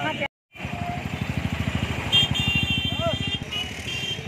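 A small motorcycle engine running close by with a fast, even low pulse. A high steady multi-tone sound comes in over it about halfway through.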